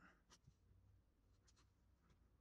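Near silence, with a few faint scrapes of a metal sculpting tool on plastiline clay: a couple near the start and two more about one and a half seconds in.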